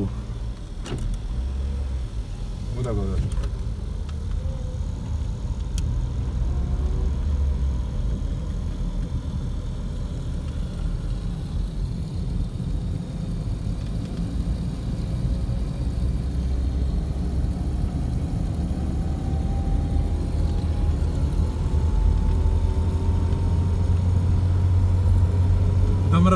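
Car driving along an open road, heard from inside the cabin: a steady low road and engine rumble, with a faint whine that slowly rises in pitch through the second half as it gets a little louder.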